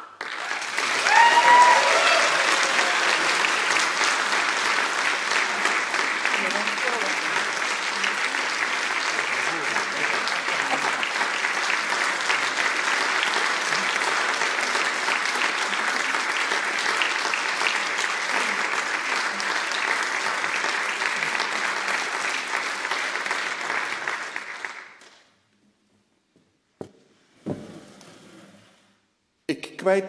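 Audience applauding steadily, with a short cheer from a voice near the start; the clapping dies away after about 25 seconds.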